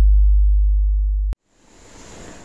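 Deep, loud sustained bass tone ending a channel logo sting, fading slightly and then cutting off abruptly about a second and a half in, followed by faint room hiss.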